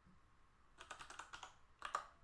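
Faint typing on a computer keyboard: a quick run of keystrokes starting a little under a second in, then a louder key press near the end.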